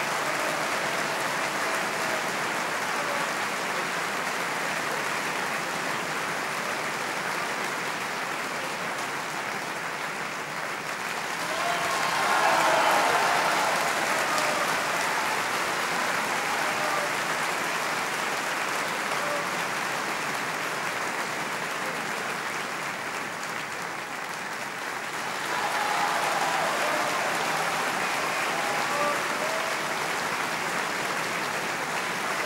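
Large theatre audience applauding a curtain call, steady dense clapping that swells louder twice, with a few voices calling out in the swells.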